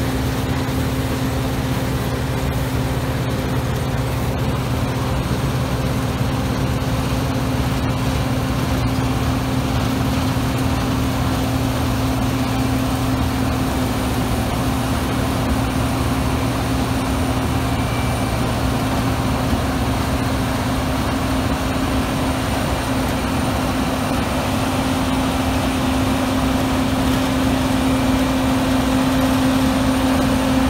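Claas Lexion 750 combine harvester running steadily as it cuts a standing cereal crop, a loud, even hum with a constant low tone. It grows a little louder near the end as the machine comes close.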